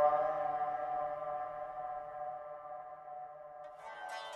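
Background music: one long held note, fading slowly, with new music starting up near the end.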